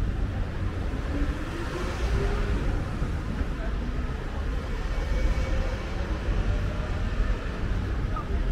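Street ambience: a steady low rumble of road traffic with faint voices of passers-by.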